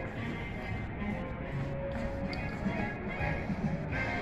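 Background music playing over the theme park's outdoor area loudspeakers.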